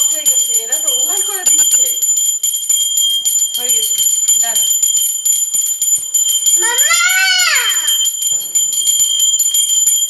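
Small brass hand bell shaken continuously, its clapper striking rapidly and the bell ringing steadily at a high pitch. Voices sound over it, and about seven seconds in comes one long call that rises and falls in pitch.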